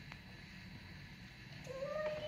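Quiet room tone with a faint click, then about one and a half seconds in a small child begins a high-pitched, drawn-out vocal call.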